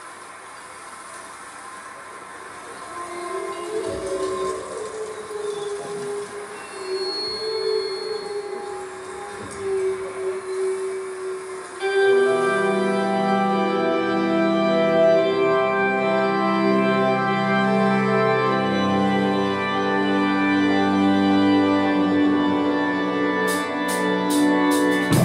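Live metal band opening a song. For the first half a few quiet, wavering held notes sound. About halfway through, loud sustained chords come in and ring on, and a few sharp drum hits come near the end.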